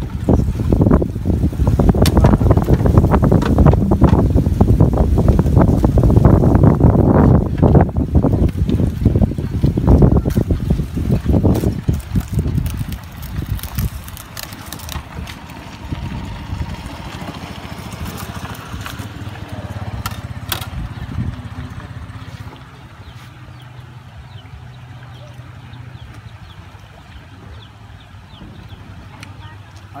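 Wind buffeting the microphone, loud for the first dozen seconds and then dying down. Later come sharp crackles as a knife cuts through the crisp skin of a deep-fried pork leg.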